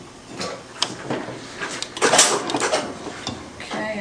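Handling noise from an X-ray cassette in its upright holder: a run of light clicks and knocks, with a louder clatter a little after two seconds in.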